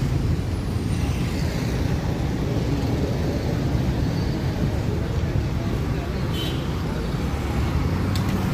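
Steady road traffic noise: the continuous rumble of cars and motorcycles passing on a busy road, with no single event standing out.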